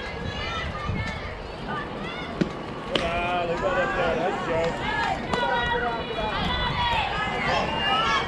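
Young girls' voices cheering and chanting at a softball game, growing louder and busier about three seconds in, with a single sharp knock just before.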